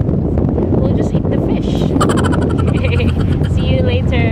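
Speedboat engine running steadily under wind buffeting the microphone, with a woman's voice over it about halfway through and again near the end.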